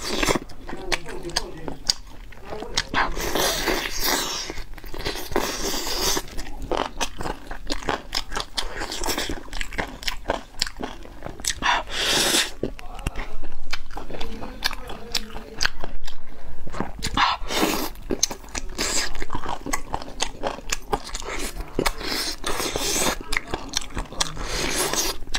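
Close-miked eating of braised chicken drumsticks: wet chewing, lip smacking and meat being torn from the bone, with irregular sharp clicks and crunches throughout and a few louder wet smacks.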